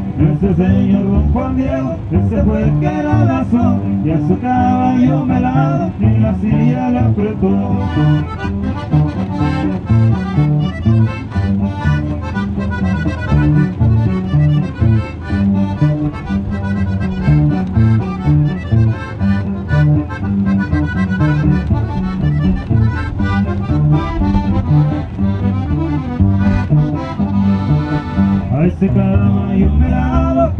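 Live accordion-led Mexican ranch music: a button accordion plays the melody over a steady, rhythmic bass line, amplified through a PA speaker.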